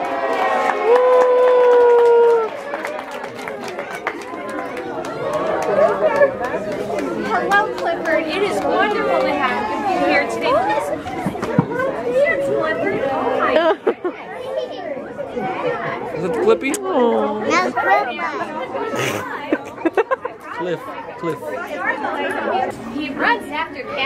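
Indistinct chatter of a crowd of children and adults in a large room, many voices overlapping. About half a second in, one voice calls out loud and long for about two seconds.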